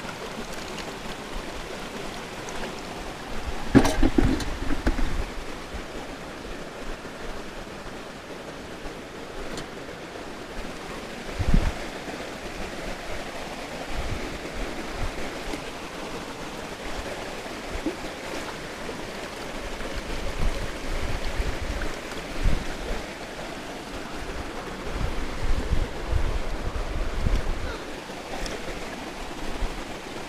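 Shallow rocky stream running over stones with a steady rush. Low thumps and bumps break in about four seconds in, again near twelve seconds, and several times in the last third.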